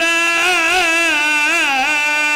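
A man's voice chanting one long, wavering held note in the sung style of a Shia mourning recitation (masaib).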